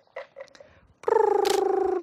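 A person's rolled 'brrr' lip trill, held for about a second in the second half, made to catch a horse's attention. It comes after a couple of soft clicks.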